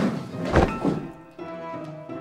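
A person dropping off a bed onto the floor with a single heavy thud about half a second in, over background music.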